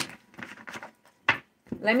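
Tarot cards being slid and gathered together into a deck on a desk: soft rustling in the first second, then one sharp tap about a second and a half in.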